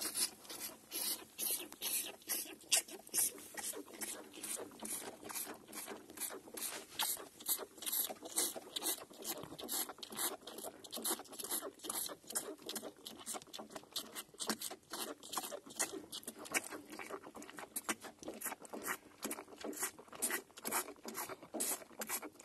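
Calf suckling milk from a rubber teat on a plastic feeder: a rapid, steady run of wet sucking slurps and clicks, several a second.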